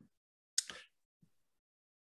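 Near silence on a video-call microphone, broken about half a second in by one short, soft noise lasting under half a second.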